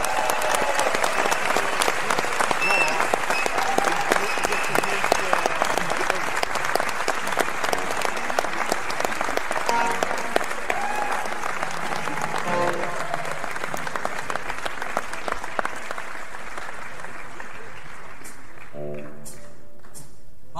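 Concert audience applauding in a hall just as a song ends, the clapping strongest early and thinning out. A held pitched note comes in near the end.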